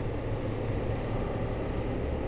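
BMW GS motorcycle running at a steady cruising speed, heard from the rider's helmet camera: a constant low engine hum under even wind and road noise.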